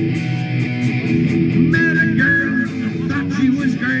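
Rock band playing live on electric guitars, bass guitar and a drum kit, with steady cymbal and drum strikes. A voice comes in right at the end.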